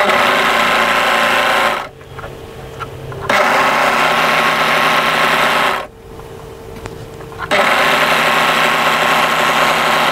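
A three-thread overlocker (serger) stitching and trimming along a fabric edge in three runs of about two seconds each. Each run stops abruptly, and a steady quieter hum carries on in the short pauses between them.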